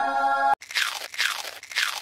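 A person biting into a slice of cheese pizza, the crust crunching a few times in quick succession. A held musical tone cuts off abruptly about half a second in, just before the crunching starts.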